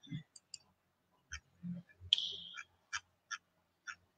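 Sharp computer clicks, about eight at irregular spacing of roughly half a second, as PDF slides are paged forward, the loudest a little after two seconds in with a brief hiss after it.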